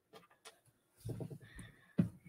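A faint, brief vocal sound from a person about a second in, over otherwise quiet room tone, ending with a soft click.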